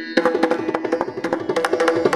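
Mridangam played in a fast run of strokes, its tuned head ringing between them.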